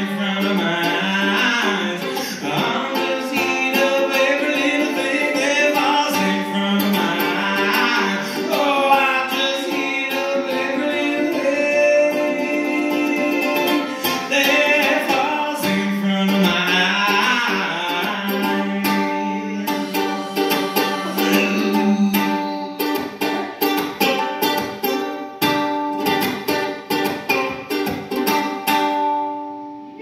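A man singing to a strummed ukulele, played live. In the last several seconds the strumming thins out into separate chords that ring and fade.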